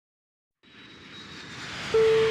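Jet airliner engine sound effect swelling in from silence about half a second in and growing steadily louder, like a plane passing or taking off. A single bright tone comes in right at the end.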